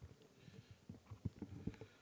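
Lectern microphone being handled and adjusted: a series of faint, soft bumps and rustles picked up directly by the mic.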